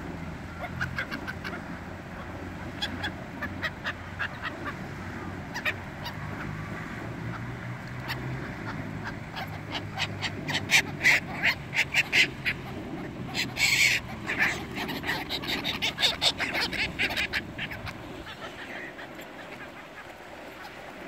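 A flock of pigeons and gulls crowding round thrown bread at a pond, giving short sharp calls with flapping wings; it starts sparse and gets busy about halfway through, with one brief loud flurry a little after that.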